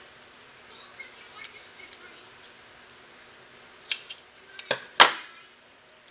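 Scissors cutting masking tape: a few sharp snips about four seconds in, then one loud snip about five seconds in, with faint handling rustle before them.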